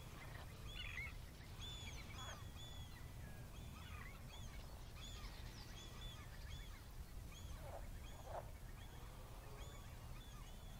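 Faint chorus of wild birds calling: many short, high chirping notes from several birds throughout, with a couple of lower calls about eight seconds in, over a steady low rumble.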